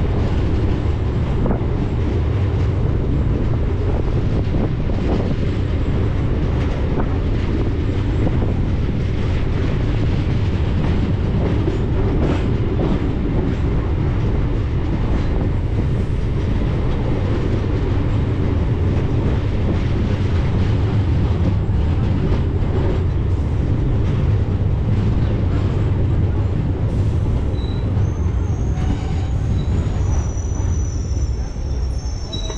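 MEMU electric train running along the track, heard from an open coach doorway: a steady rumble of wheels on rails with clicks at the rail joints. A faint high squeal comes in near the end.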